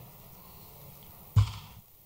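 Quiet room tone, broken by one short, sudden thump about a second and a half in that dies away quickly.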